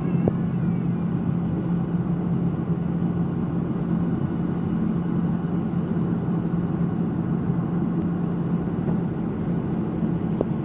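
Steady jet airliner cabin noise on the approach to landing: the engine and airflow drone heard from inside the cabin at a window seat, with a constant low hum running through it.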